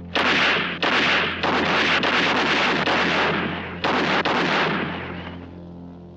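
Film-soundtrack gunfire: a quick string of loud shots with sharp starts, running almost continuously for the first four seconds, then two more shots about four seconds in, each with a long reverberant tail that dies away by about five and a half seconds.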